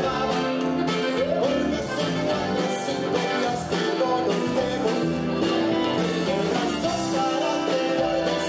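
Live Tejano band playing: a button accordion over bass, drums and guitar, with a male lead vocal.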